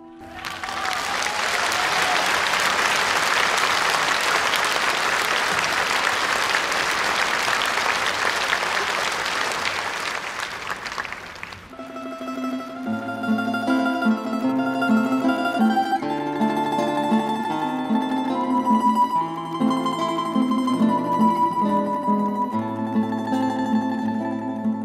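Audience applause that swells up at once and fades out about halfway through, followed by an ensemble starting an instrumental introduction of plucked-string notes over low sustained bass notes.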